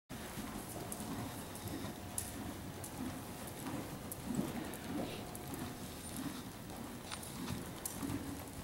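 A ridden horse's hoofbeats on soft dirt arena footing, dull thuds coming in an uneven rhythm as it moves around the ring.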